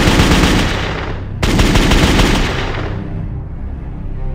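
Sustained rapid automatic gunfire in two long bursts. The second begins about one and a half seconds in and fades away by about three seconds, when low steady music tones take over.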